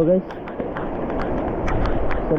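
Heavy rain falling in a steady hiss, with raindrops ticking sharply on the camera.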